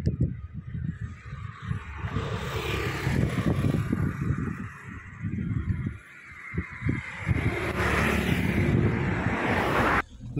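Road noise from a moving vehicle with wind rushing over the phone microphone; the rush swells twice.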